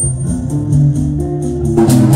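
Live band music: electric guitar and bass guitar playing over a steady percussion pulse of about four to five beats a second, the percussion getting much louder near the end.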